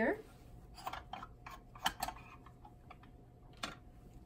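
A string of light clicks and clinks as the rotor cover of a microhematocrit centrifuge is taken off and the spun capillary tubes are handled. The two sharpest clicks come a little under two seconds in and near the end.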